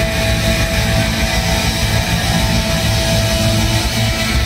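Punk band playing live at full volume: distorted electric guitars, bass and drums in a steady, driving rock beat.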